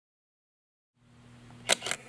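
Camera shutter release: two sharp clicks about a fifth of a second apart near the end, over a faint low hum that starts halfway in after dead silence.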